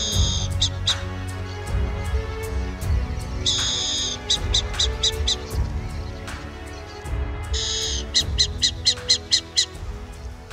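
Background music with a bird's call over it, repeated three times: a short held note followed by a quick series of short notes.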